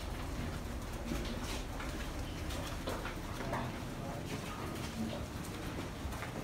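Footsteps and shuffling of a group of people walking through a stone passageway, with irregular scuffs and taps over a steady low rumble.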